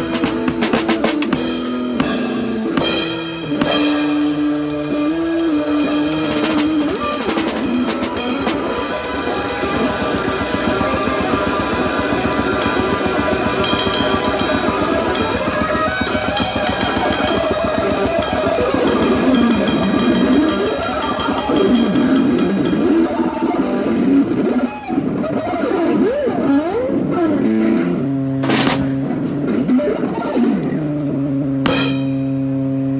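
Live blues-rock played on an electric guitar with a snare drum and crash cymbals beating along. Near the end the cymbals and snare drop out, leaving the guitar playing on alone.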